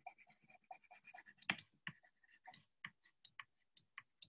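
Faint, irregular ticks and light scratches of a stylus writing by hand on a tablet screen.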